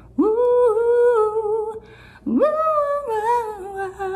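A woman singing two long wordless notes, each sliding up into the note and then held with a slight wobble.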